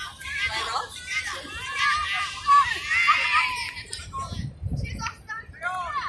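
Several women's voices shouting and calling out to one another, overlapping and high-pitched, loudest around the middle. Excited calls between teammates during open play.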